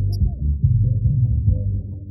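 Live sertanejo band music with accordion, heard muffled: only the bass and low notes come through, in a pulsing rhythm that fades near the end.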